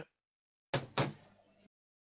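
Two quick thumps, about a quarter second apart, picked up on a voice-chat microphone and cut off abruptly.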